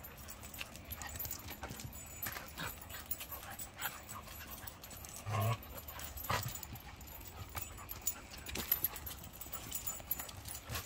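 Two dogs play-wrestling: their paws scuffle and click on concrete, with small dog vocal sounds. One short, louder, low-pitched sound comes about halfway through.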